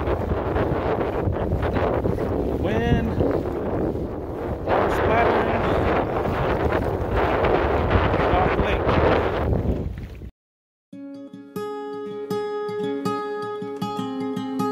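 Strong, gusty wind buffeting the microphone over a choppy lake. It cuts off suddenly about ten seconds in, and after a brief silence an acoustic guitar starts playing plucked notes.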